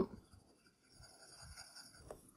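Pencil lead scratching faintly on a paper answer sheet as an exam bubble is shaded in with small circles, worked from the centre outward.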